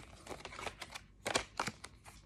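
A deck of tarot cards being shuffled and handled by hand: a scatter of light card clicks and snaps, the sharpest a little over a second in.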